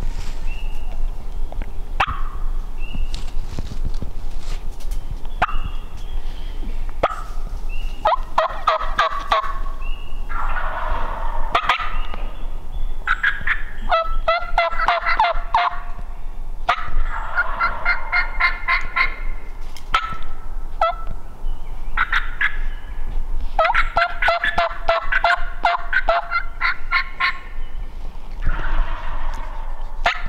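Wild turkey gobbler gobbling repeatedly, in several long rattling bouts of two to three seconds each, starting about eight seconds in. Short high notes repeat before the gobbling begins.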